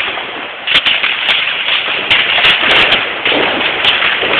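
Fireworks and firecrackers going off: a dense, continuous crackle with sharp bangs every half second or so, several in quick succession in the middle.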